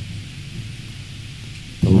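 A pause in a man's talk filled by a steady low hum and even hiss from the microphone feed. His voice comes back near the end.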